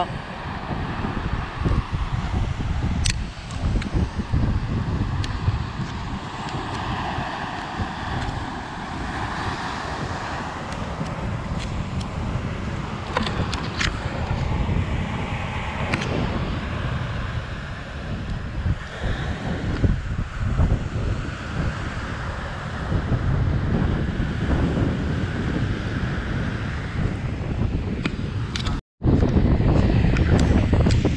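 Wind noise on the microphone over the steady wash of breaking surf, with a few short clicks; the sound drops out for an instant near the end.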